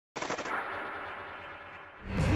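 Automatic gunfire: a sudden, rapid burst of shots, followed by a dense rush of noise that slowly fades.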